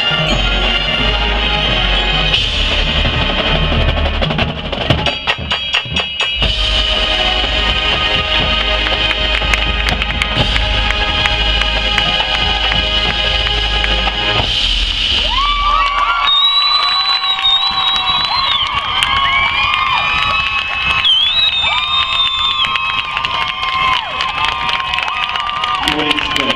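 High school marching band playing the end of its field show: sustained brass chords over bass drums and mallet percussion, with a burst of rhythmic percussion strokes about five seconds in. The music ends about sixteen seconds in, and the crowd cheers and shouts loudly.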